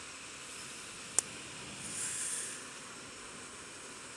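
Steady wind and road hiss from a motorcycle under way, with one sharp click about a second in and a brief swell of hiss around two seconds in.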